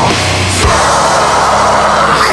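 Heavy metal band playing an instrumental passage with no vocals. The low notes shift to a new pitch about two-thirds of a second in.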